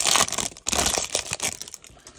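Foil trading-card pack wrapper crinkling as it is torn open and the cards are slid out: two loud spells of crinkling in the first second and a half, dying away near the end.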